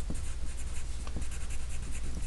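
Pencil scratching on graph paper in a series of short strokes as words are hand-written, over a steady low hum.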